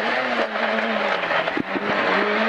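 Peugeot 106 A5 rally car's engine running hard, heard from inside the cabin, as the car turns through a tight left hairpin; its steady note sags slightly partway through. A few sharp knocks sound about one and a half seconds in.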